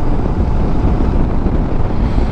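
Steady wind rush over the microphone with the running engine of a Suzuki V-Strom 650 XT's V-twin underneath, as the motorcycle cruises along at road speed.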